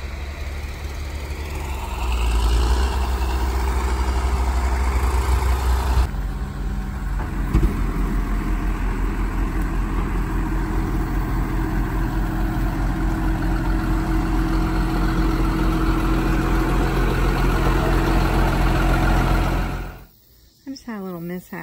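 Heavy farm engines running steadily at a silage pit: a diesel loader tractor, then, after a change about six seconds in, a silage dump truck's engine as the truck pulls up to the pit, with a brief knock shortly after.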